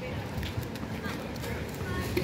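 Light taps of a futsal ball against a child's feet and sneaker footsteps on a concrete court while he dribbles through cones, with faint children's voices in the background.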